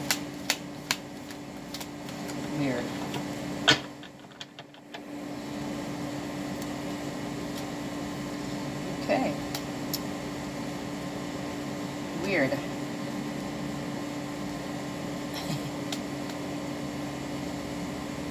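Steady mechanical hum with a low constant tone from a room appliance. Over it come a few crisp clicks of tarot cards being thumbed through in the hand during the first second, and a sharper one about four seconds in. Brief murmured voice sounds come about nine and twelve seconds in.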